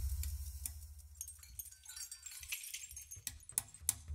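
A low note from the percussion music dies away over the first second, leaving a quiet stretch with a few faint, light metallic clicks and jingles from small hand percussion, a couple of sharper ticks near the end.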